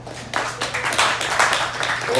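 A small audience clapping, dense and irregular, starting about a third of a second in as the song's last notes die away.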